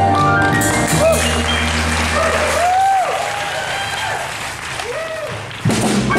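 A live jazz vocal number with piano and upright bass ends on a held low note, and the audience applauds with whooping cheers. Near the end, piano and bass strike up the next tune.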